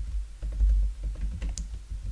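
Typing on a computer keyboard: a run of scattered, light keystrokes, over a steady low hum.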